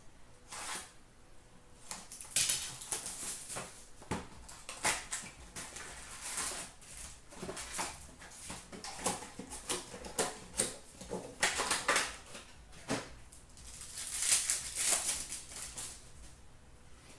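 Trading-card packs being torn open and the cards handled: irregular crinkling, tearing and rustling of the pack wrappers, with clicks and taps of cards being slid and squared. There are louder bursts of rustling at several points.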